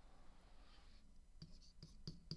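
Faint scratching of a digital pen writing on a tablet screen, followed by a few light clicks.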